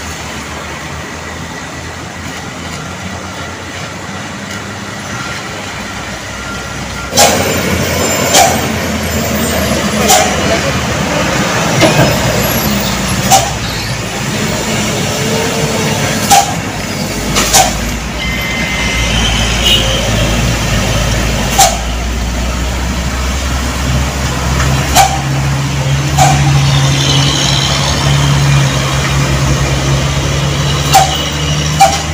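Heavy diesel trucks running in slow traffic. A deep engine drone builds about halfway through and holds steady toward the end, and sharp clicks or knocks come every second or two.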